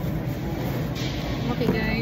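Steady low hum of a supermarket's background, with faint voices in the second half. A thin plastic produce bag crinkles briefly about a second in as it is twisted shut.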